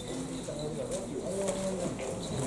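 Pigeons cooing softly in the quiet after the kagura music stops, with faint low voices behind them.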